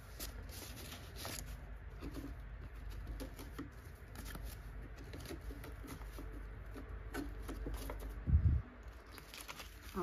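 Paper banknotes being handled: soft, irregular rustling and flicking of bills as they are sorted and tucked back into a cash binder. A single low thump about eight seconds in.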